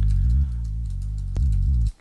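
Synth bass line played on a Teenage Engineering OP-1: deep notes stepping from pitch to pitch every fraction of a second, with a few ticks over them. It cuts off suddenly just before the end.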